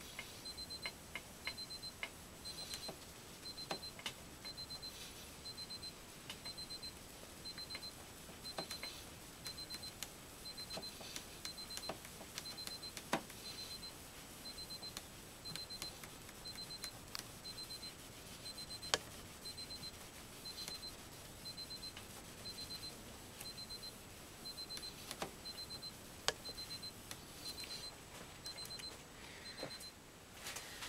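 An electronic alarm beeping in short groups of rapid high pips, repeating about once a second. Over it come occasional soft clicks and knocks from a sponge being worked over a foil plate.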